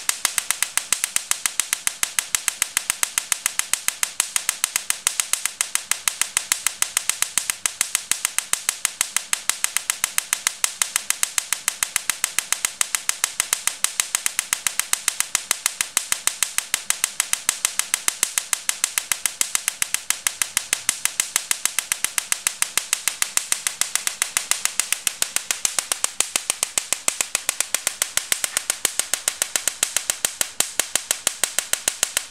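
Low-frequency Tesla coil sparks snapping across a gap of about 50 mm to a grounded point, in a fast, even rhythm of several sharp cracks a second that keeps up steadily.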